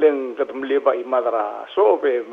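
Speech only: a woman talking, starting abruptly after a brief pause.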